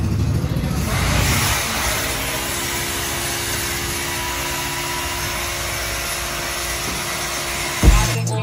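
A steady running noise, like a motor vehicle's engine and road noise, with a low hum holding steady through the middle. A sudden loud thump near the end.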